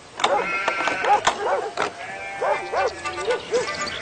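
Farm animals bleating in short, repeated arching calls over a music cue, with a few sharp clicks.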